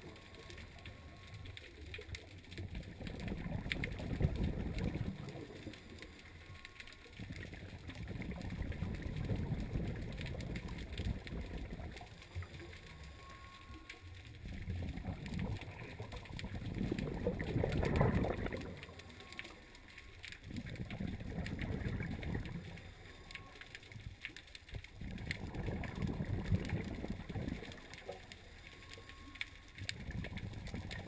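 Scuba diver breathing through a regulator underwater: a short faint hiss of inhalation, then a longer rumble of exhaled bubbles, repeating about every five to six seconds. The loudest exhale comes about eighteen seconds in.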